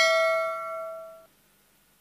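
A single bright bell-like ding, a notification chime sound effect, ringing and fading, then cutting off about a second in.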